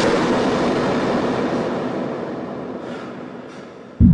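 A large scale model of a building swept off a desk, crashing with a sudden loud impact that trails off in a long rumbling, clattering decay over about four seconds, with a couple of small clatters near the end.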